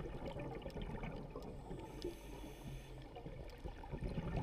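Underwater ambience picked up by a diver's camera in its housing: a muffled, steady low water rush with faint scattered clicks.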